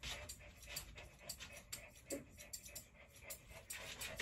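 Thinning shears snipping at a small dog's tail fur: faint, quick clicks about four a second, with a short low sound about two seconds in.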